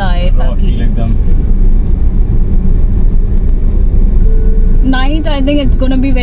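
Car driving slowly along an unpaved dirt road: a steady low rumble of engine and tyres that holds an even level throughout.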